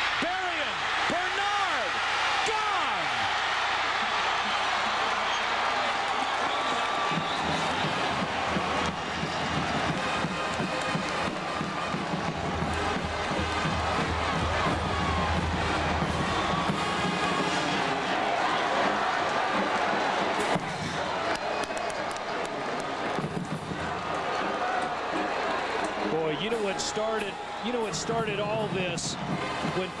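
Stadium crowd cheering through a Fresno State touchdown play and the celebration after it, with a band playing, heard through a TV broadcast.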